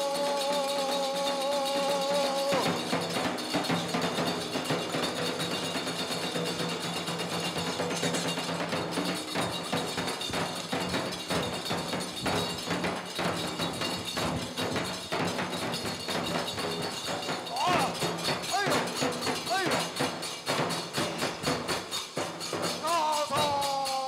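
Nanbu kagura accompaniment: a taiko drum and kane hand cymbals played in a fast, dense, steady rhythm for a sword-fight dance. A long held chanted voice line ends about two seconds in, and the chant returns near the end.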